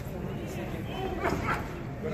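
Indistinct voices of spectators around a boxing ring, with a few short, sharp shouts or yelps about a second in and no clear words.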